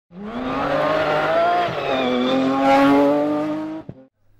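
A racing car's engine accelerating hard, its pitch climbing, dropping briefly at a gear change about two seconds in, then climbing again before fading out near the end.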